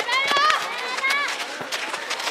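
Children shouting and calling out to one another on a football pitch, a quick run of high-pitched calls in the first second or so, then quieter.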